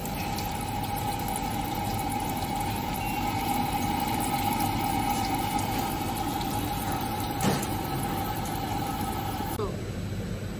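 Electronic bidet seat's water pump running with a steady whine while the wand nozzle sprays water into the bowl. There is a single sharp click about three-quarters of the way through, and near the end the whine drops in pitch and stops as the spray shuts off.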